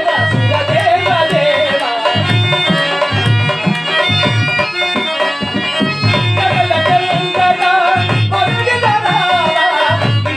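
Male actor singing a drawn-out Telugu stage-drama verse (padyam) in a wavering, ornamented melody through a microphone, accompanied by tabla strokes and steady held instrumental notes.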